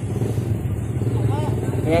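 Motorcycle engine of a tricycle idling with a steady low, even pulsing hum.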